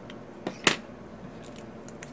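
A scalpel cutting the plastic seal on a lip gloss tube: a faint tick, then one sharp plastic click about two-thirds of a second in.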